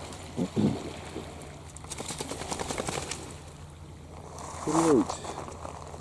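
Quiet shoreline sound of water lapping among wet pebbles, with small stone crackles. Two short voiced murmurs are heard: a brief one just after the start and a falling one about five seconds in.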